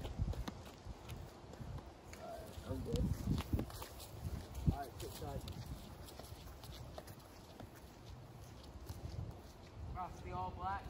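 Wind buffeting the microphone as a steady low rumble, with faint distant voices and scattered clicks; the loudest is a single sharp knock a little before the middle.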